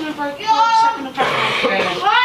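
A child's high-pitched voice, with a drawn-out held note about half a second in.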